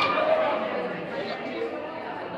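Indistinct chatter of several people's voices in a large indoor hall.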